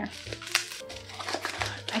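Plastic wrapping around a mug crinkling and crackling as it is pulled off by hand, with background music underneath.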